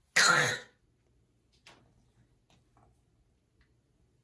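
A baby's single loud, raspy, cough-like vocal burst, about half a second long, just after the start, followed by a few faint small sounds.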